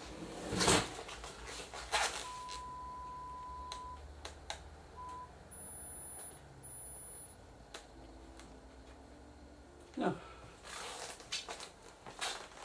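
Test-signal beeps from the TV's speaker: a steady mid-pitched test tone for nearly two seconds, a short blip of the same tone a second later, then two brief high-pitched beeps. Sharp clicks and knocks sound around them, the loudest less than a second in.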